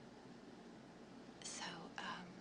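Faint room tone, then about a second and a half in a short whispered breathy voice sound that falls in pitch.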